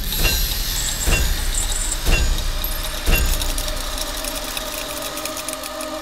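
Blacksmith's hammer strikes on hot iron at an anvil, four blows about a second apart, each with a short metallic ring, over crackling sparks. After the last blow a steady droning tone builds.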